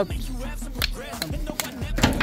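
Background music with a beat, with a few sharp clicks.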